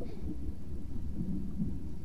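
A low, muffled rumbling noise with faint wavering low tones.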